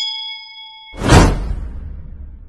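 Notification-bell sound effect ringing on one steady chord and fading, cut off just before a second in by a loud whoosh with a low rumble, the loudest part, that then dies away.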